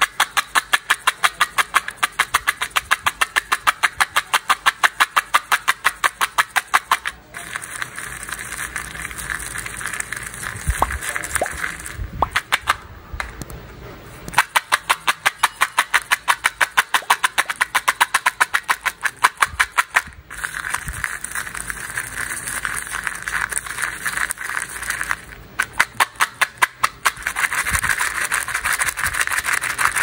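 Candy-coated chocolates rattling inside a small plastic cup shaken back and forth, a fast even run of clicks, several a second, broken by a few short pauses.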